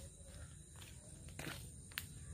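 Faint footsteps on grass and earth: a few soft clicks over a low rumble.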